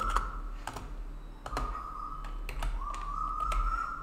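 Computer keyboard keys clicking in scattered taps while code is typed.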